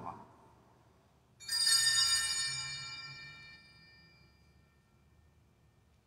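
Altar bell struck about a second and a half in, ringing with bright high tones that die away over about three seconds. It marks the elevation of the chalice at the consecration.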